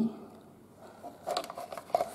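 Plastic clicks and knocks as a cordless phone base and its plug-in power adapter are handled on a stone countertop, a short cluster of them in the second half.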